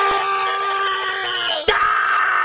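A man's long, loud scream held on one nearly steady high pitch. About 1.7 s in it breaks with a sharp click, then goes on brighter.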